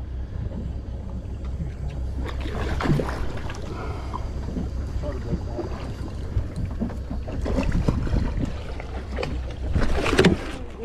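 Steady low rumble of a boat's engine running, with wind on the microphone and faint voices. Right at the end a splash as a gaff is driven into a fish beside the hull.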